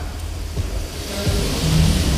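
A steady low studio hum with faint hiss and a faint background music bed, in a pause in speech. A man's voice comes in briefly and faintly near the end.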